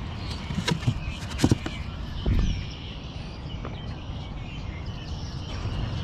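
A few sharp knocks and splashes in the first two and a half seconds from a styrofoam cooler of water holding live bluegill and shellcracker, as a hand reaches in among the fish. Steady low outdoor noise runs underneath.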